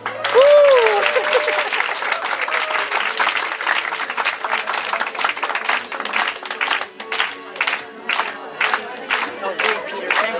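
Audience applause and cheering, with a whoop in the first second or so. The clapping thins into steady rhythmic claps, about two to three a second, in the second half.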